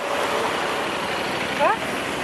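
Motorcycles and a car driving past close by on an open road, a steady rush of engine and tyre noise.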